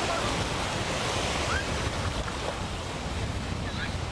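Ocean surf washing and breaking in the shallows, with wind rumbling on the camcorder microphone.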